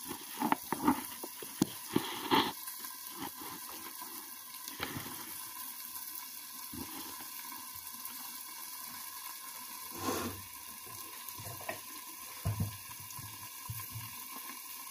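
Greens, onions and coconut milk simmering and sizzling under a glass lid in a frying pan on a gas stove: a steady bubbling hiss. A few sharp clinks come in the first couple of seconds, and a few soft thumps near the end.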